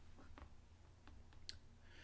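Near silence: room tone with a low hum and a few faint, scattered clicks.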